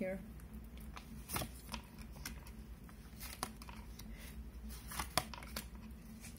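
Tarot cards being shuffled and handled: a run of irregular soft flicks and slaps, with a sharper snap about five seconds in.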